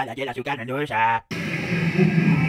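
A man's voice speaking, cut off abruptly a little over a second in, then quiet music starts up.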